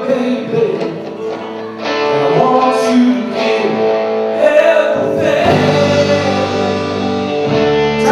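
A live rock band playing a song: sung vocals over electric guitars, bass guitar and drums. Deeper bass notes come in about five seconds in.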